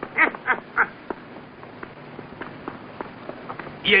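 A duck quacking three short times in quick succession, then faint scattered clicks.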